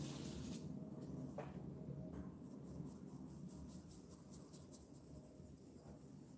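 Faint, quick dabbing of a stencil brush pouncing black paint through a plastic stencil onto a wooden board.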